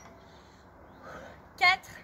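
Speech only: a woman's voice saying one short counted number ('quatre') near the end, over faint background noise.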